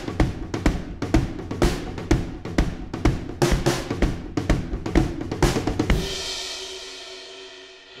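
Acoustic drum kit playing a driving tom-and-kick groove with a snare backbeat. About six seconds in the groove stops on a cymbal crash that rings and fades away.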